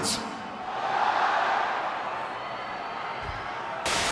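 Arena crowd noise from a large audience, a steady roar of cheering and chatter that swells about a second in and then settles. Near the end a brief burst of hiss comes in with a cut to TV static.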